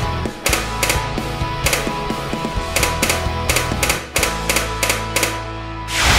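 Background music with a sustained bass, punctuated by a dozen or so sharp, irregularly spaced clicks.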